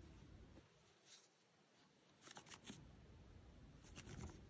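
Near silence, with a few faint, brief rustles of yarn as a crocheted swatch is unravelled by hand.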